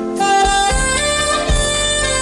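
Live saxophone playing a slow melody over a backing band with bass and drums. The sax holds notes and steps to a new pitch several times.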